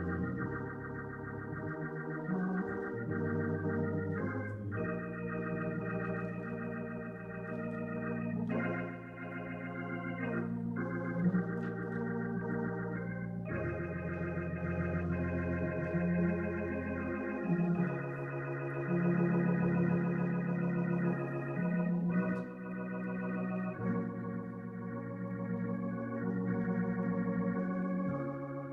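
Organ playing slow, sustained chords, each held for a few seconds over a low bass line.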